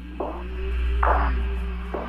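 Sparse trailer-style music intro on guitar: three single plucked notes about a second apart, each ringing out, over a low droning swell that rises and then fades.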